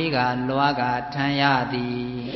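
A man's voice chanting a Buddhist recitation in slow, drawn-out syllables whose pitch rises and falls.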